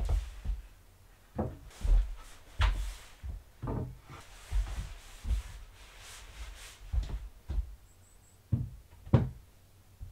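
Wooden boards being handled: a long stained wooden plank is lifted and stood upright against a wall, giving a scattered series of knocks and thuds, the loudest near the end.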